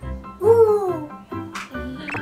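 Background music with a steady beat. About half a second in, a loud wordless cry from a toddler, lasting under a second, rising slightly and then sliding down in pitch.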